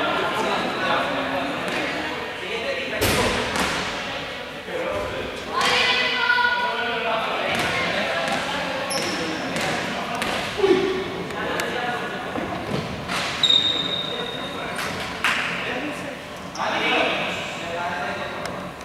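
Voices and shouts of players echoing in a large sports hall, with balls bouncing and thudding on the court floor now and then.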